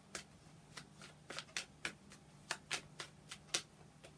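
Tarot deck being shuffled by hand, the cards slapping together in a run of quick, irregular clicks.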